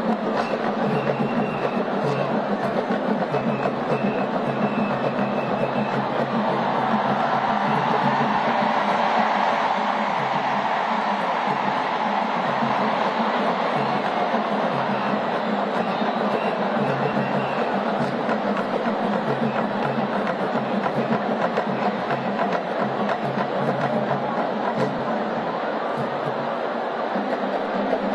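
Live traditional Congolese dance music: steady drumming with voices singing, played on for the whole stretch without a break.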